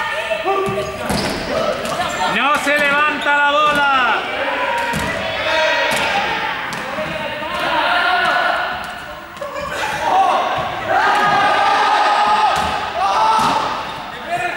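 Large inflatable exercise balls thumping as they are hit by hands and bounce on a sports-hall floor, many short knocks scattered through. Several voices shout and call out over each other, with a few sharp rising and falling shouts about three seconds in.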